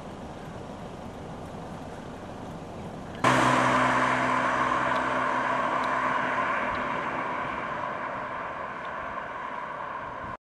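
A combine harvester running at a distance, then, after an abrupt cut about three seconds in, a much louder passing road vehicle with a steady engine hum that slowly fades as it drives away.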